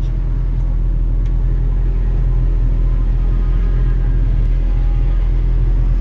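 Race car engine heard from inside the cabin, running with a steady drone and no revving. The driver has no acceleration, which he blames on a failed throttle cable.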